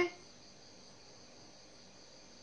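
A faint, steady high trill of crickets, with the end of a man's spoken word right at the start.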